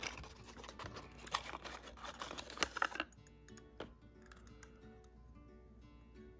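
Small cardboard toy box handled and opened by hand, its end flap lifted and the diecast model slid out: dense scraping and light clicks for about the first three seconds, then only faint handling. Soft background music runs underneath.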